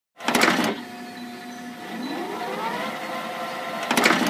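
VHS cassette being loaded into a videocassette recorder: a loud clunk as the tape goes in, then the loading mechanism whirring with a whine that rises in pitch and holds, and a second clunk at the end.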